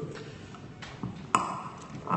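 Faint room noise, broken about one and a half seconds in by a single sharp tap with a short ringing tone that dies away quickly.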